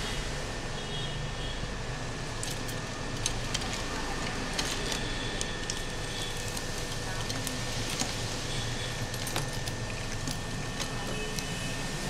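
Small scattered clicks and taps of an Oppo A33w phone's cracked display assembly being handled and separated from its metal frame, over a steady background hum.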